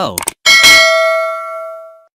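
Notification-bell 'ding' sound effect: a single bell-like chime struck about half a second in, its several ringing tones fading away over about a second and a half.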